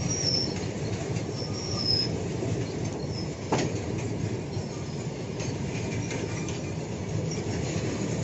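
BOXN freight wagons rolling past close by: a steady rumble of steel wheels on rail, with brief high wheel squeals coming and going. A single sharp clack stands out about three and a half seconds in.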